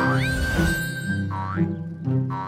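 Cartoon hopping sound effects: two springy rising boings about a second apart, one for each leap of the bunny, over cheerful background music.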